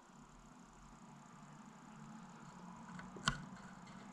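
Faint sounds of drinking water from a plastic bottle, with one short, sharp click a little after three seconds in.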